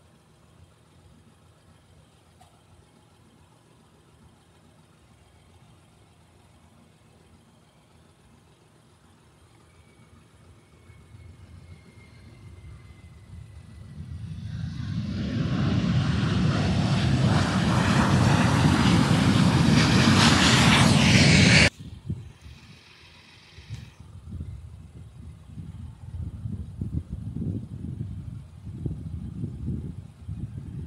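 Jet airliner's engines: a faint whine falling in pitch, then a roar that builds steadily louder over several seconds and cuts off suddenly. A lower, uneven rumble follows.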